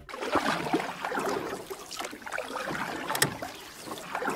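A rushing, crackly noise sound effect with no tune or voice. It starts abruptly and wavers irregularly in strength.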